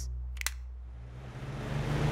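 Electric fan switched on with a click, then the rushing of its moving air builds up and grows steadily louder as it spins up.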